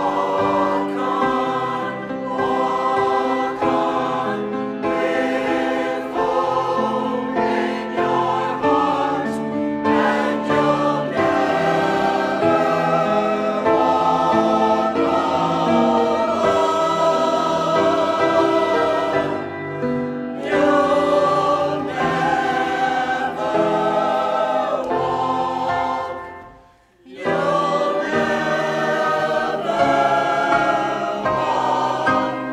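A church choir sings an anthem with grand piano accompaniment, in sustained phrases. Near the end the music drops away for a moment, then resumes.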